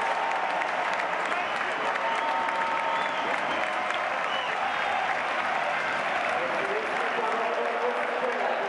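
Ice hockey arena crowd applauding and cheering, a dense steady wash of clapping with shouting voices mixed in. Near the end, voices in the crowd join in a held chant.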